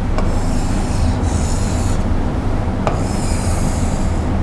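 A pen drawn across a board surface, tracing the lines of a triangle: two long strokes, the first about a second and a half long, the second starting with a light tap about three seconds in. A steady low hum runs underneath.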